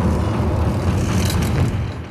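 Loud, steady, machine-like low rumble with a hiss over it, opening an industrial hardcore track; it fades near the end.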